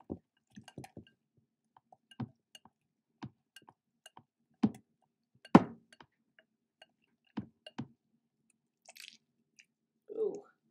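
Whisk being worked through thick glue slime in a glass bowl: irregular wet squelches and knocks of the whisk against the glass, two louder knocks around the middle. The slime is being mixed in with its activator.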